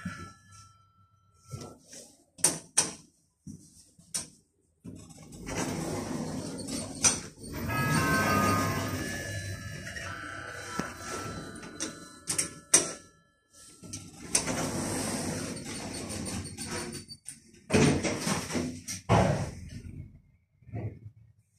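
Automatic sliding doors of a passenger lift running inside the car, with several sharp clicks and stretches of steady mechanical noise as the doors close before the car goes up.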